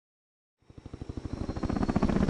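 Helicopter rotor chop fading in out of silence about half a second in, a rapid even pulsing that grows steadily louder as it approaches.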